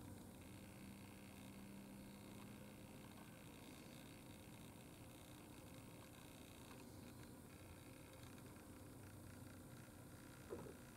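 Near silence: faint, steady background hiss.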